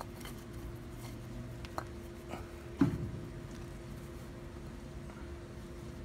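Hands handling a rusted drum brake on a truck's front hub: a few small clicks and one sharper knock about three seconds in, over a faint steady hum.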